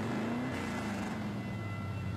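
A motor vehicle's engine running with a low, steady drone; its pitch rises briefly near the start.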